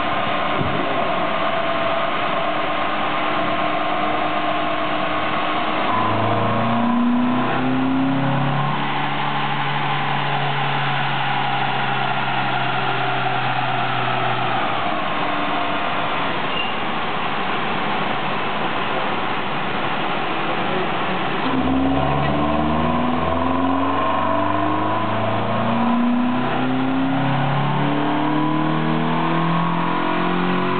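Renault Mégane II's non-turbo 115 hp four-cylinder petrol engine, breathing through an open Green air filter, running under load on a chassis dyno with its front wheels driving the rollers, over a steady whine of tyres and rollers. The engine pitch climbs in steps about six seconds in and again from about twenty-two seconds in.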